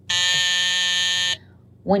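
A steady electronic buzzer tone, held at one pitch for just over a second and then cut off abruptly. It stands in for a missing word in the middle of a spoken sentence, as a censor bleep.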